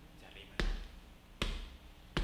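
Two sharp, deep thumps, under a second apart, part of an evenly spaced series of blows.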